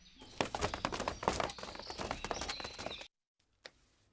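A group of armoured soldiers moving off in a hurry: a quick jumble of footsteps and rattling armour that stops abruptly about three seconds in, followed by a single faint tap.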